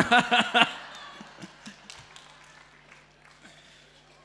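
A man laughs into a microphone, a short burst of rhythmic 'ha-ha' pulses, followed by scattered laughter from a congregation that fades away over the next couple of seconds.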